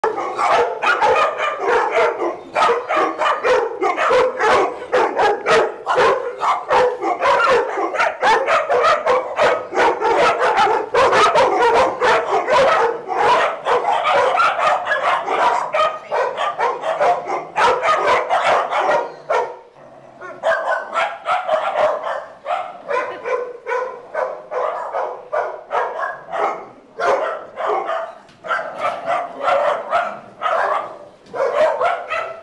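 A pack of dogs at play barking almost without pause, rapid overlapping barks with a brief lull about twenty seconds in.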